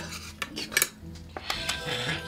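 Chopsticks clicking and scraping against a food cup as someone eats from it, several sharp clinks.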